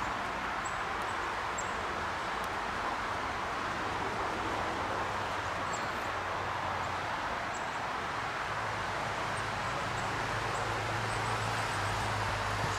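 A beaver gnawing on a branch in shallow water: faint small clicks over a steady background hiss. A low hum comes in about eight seconds in.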